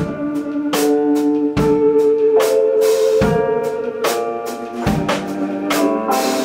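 Live band playing an instrumental passage between vocal lines: drum kit with a deep bass-drum hit about every 1.6 s and lighter cymbal strokes between, under long held keyboard-synth notes and electric guitar.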